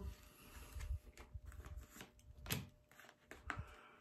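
Tarot cards being handled: faint scattered clicks and soft rustles as cards are drawn and slid against each other.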